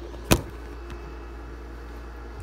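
A single sharp knock about a third of a second in, from the phone being handled, over a steady low hum.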